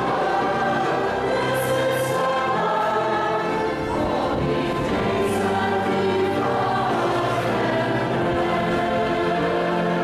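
A choir singing, the voices holding notes of about half a second to a second each at a steady level.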